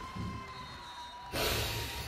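A man's sharp, hissing rush of breath through the mouth about one and a half seconds in, a wincing reaction to a hard volleyball block. A faint steady high tone sounds before it.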